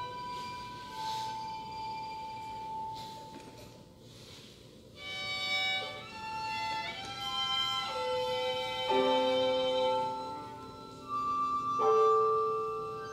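Contemporary chamber music led by violin, with cello, playing long held notes. It thins to a quiet stretch around three to five seconds, then comes back louder with several notes sounding together, a stepwise rise about seven seconds in, and a lower note held from about nine seconds.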